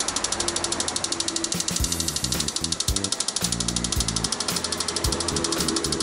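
Fuel injectors on an injector cleaning and test bench clicking in a fast, even rhythm as the machine pulses them open, spraying into graduated test tubes.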